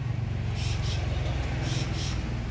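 A steady low engine rumble, as of a motor vehicle running, with two short high-pitched hissy bursts, one about half a second in and one near the end.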